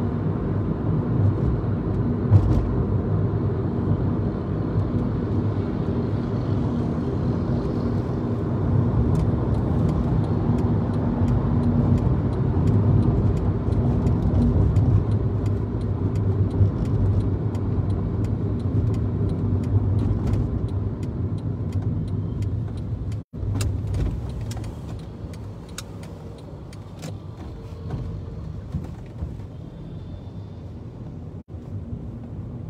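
Engine and road noise heard from inside a moving car, a steady low rumble. About 23 seconds in, the sound cuts out for an instant, then goes on quieter.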